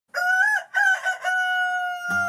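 A rooster crowing: two short notes, then a long held final note that falls slightly in pitch.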